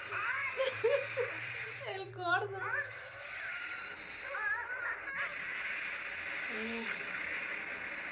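Voices from a Spanish-dubbed cartoon episode, heard in short bursts over a steady hiss, with a brief chuckle near the start.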